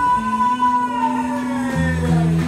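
Live band music: a long held note that slides slowly down in pitch over a steady low chord. The deep bass drops out during the held note and comes back in near the end.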